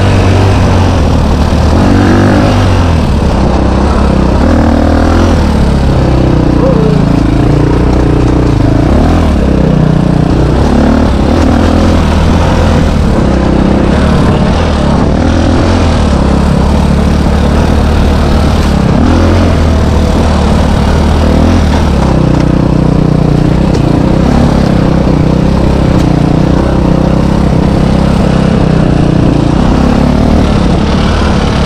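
KTM dirt bike engine running under load while riding, its pitch rising and falling every few seconds as the throttle is opened and closed.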